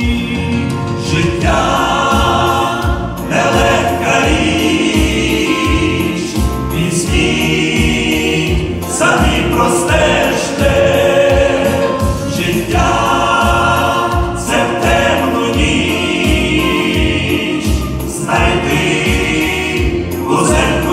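Male vocal group of five singing a gospel song in Ukrainian in several-part harmony into microphones, over an accompaniment with a steady low beat, amplified through a PA.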